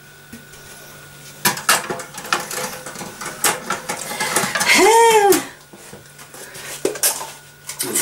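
A plastic bowl and kitchen scale being handled and set down: a run of light knocks and clatters. About five seconds in comes a short squeal that rises and then falls in pitch, the loudest sound.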